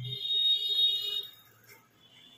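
Electric hair clipper in use: its low hum stops just after the start, while a loud high-pitched whine holds for about a second and a half.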